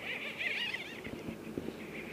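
A songbird sings a quick, wavering warble in the first second, with fainter birdsong around it and a few light ticks.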